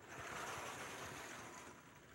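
Sliding lecture-hall blackboard panel being moved by hand, a soft steady hiss of rubbing that lasts nearly two seconds and fades near the end.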